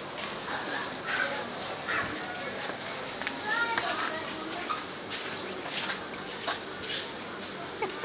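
Street cats meowing a few times in short calls, over a steady hiss with scattered light clicks and rustles.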